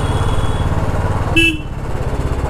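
Royal Enfield Classic 350 single-cylinder engine running at low speed with its steady thumping beat, ridden up close. A short horn toot sounds about a second and a half in, and the engine eases off just after it.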